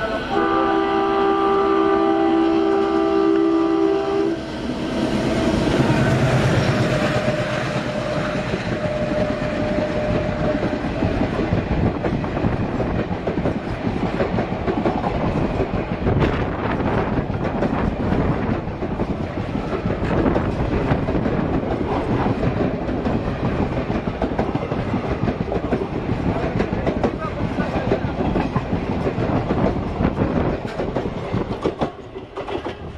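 An approaching Indian Railways locomotive sounds its horn, a steady chord of several tones held for about four seconds. Then its train of passenger coaches passes close by on the next track, wheels rumbling and clacking over the rail joints for the rest of the time.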